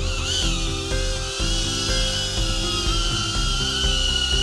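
HOVERAir X1 Smart palm-sized drone's propellers whining high as it takes off, the pitch wavering briefly at the start and then holding steady, with background music underneath.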